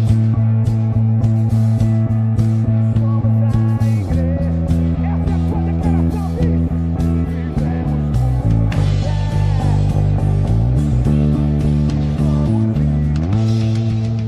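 Five-string electric bass played fingerstyle along with a full band recording with drums. The bass holds long low notes, then moves into a busier, lower-reaching line about four seconds in.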